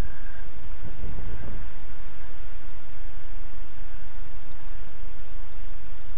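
A loud, steady hiss, with a few soft low knocks about a second in.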